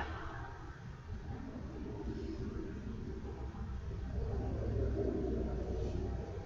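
A low rumble that grows a little louder in the second half.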